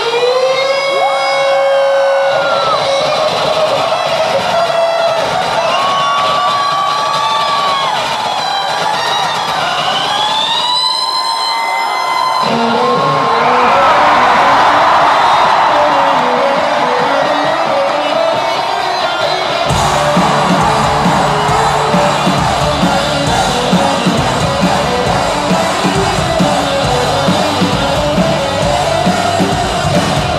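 Live rock band in a hall: an electric guitar plays long, sliding notes, then a denser riff, with bass and drums coming in about twenty seconds in. The crowd cheers and yells over the music.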